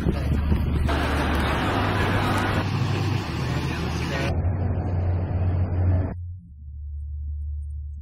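Outdoor ambience of a large crowd walking and talking beside road traffic, over a steady low rumble. The higher sounds drop away about four seconds in and again about six seconds in, leaving only the rumble.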